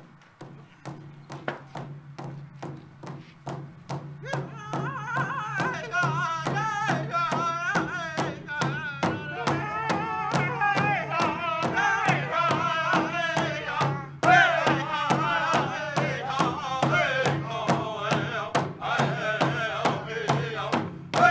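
Native American powwow drum group performing a traditional honor song: a big drum struck in a steady beat about two and a half times a second. Voices join in singing about four seconds in and grow louder and higher about fourteen seconds in.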